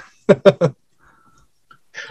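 A man's short laugh: three quick bursts in a row.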